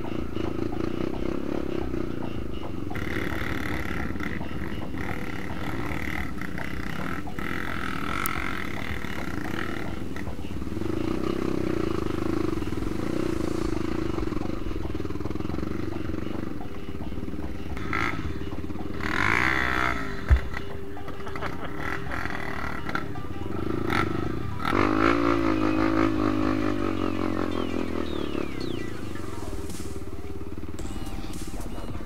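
Yamaha WR155R trail bike's single-cylinder four-stroke engine running on a muddy dirt track, its pitch rising and falling as the throttle opens and closes, under background music. A single sharp knock about twenty seconds in.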